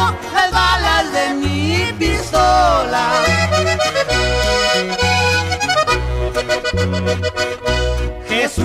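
Accordion playing an instrumental break in a norteño corrido, with a quick run of notes in the middle, over a steady bouncing bass accompaniment.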